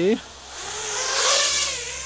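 iFlight Nazgul 5-inch FPV quadcopter's motors and propellers whining as it lifts off and flies away. The whine swells to its loudest just past halfway, its pitch rising and then falling, and fades toward the end.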